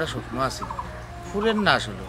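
A man's voice talking in two short phrases, one at the start and one about a second and a half in, with a steady low hum underneath.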